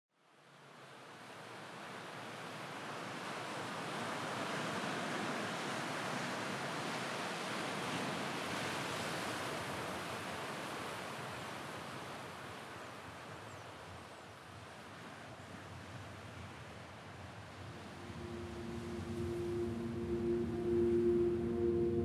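Ocean surf breaking and washing over a rocky shore, a steady rush that fades in from silence over the first few seconds. About eighteen seconds in, sustained ambient music tones come in over it.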